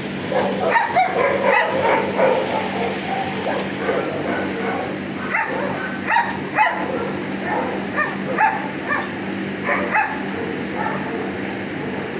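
Dogs barking and yipping in many short bursts, over a steady low hum.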